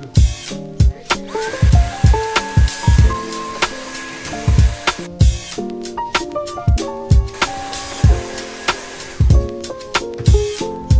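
Background music with a steady drum beat and melodic instrumental notes.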